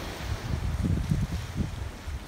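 Wind buffeting a phone's microphone: an uneven, gusty low rumble.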